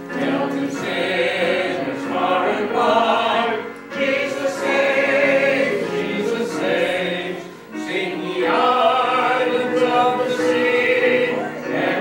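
A group of voices singing a hymn together in sustained phrases, with short breaks between phrases about four and about seven and a half seconds in.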